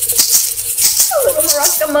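A pair of maracas shaken in a steady rhythm, about two shakes a second.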